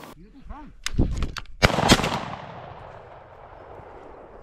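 Shotgun fire: a few sharp reports between one and two seconds in, the loudest two close together, followed by an echo that dies away.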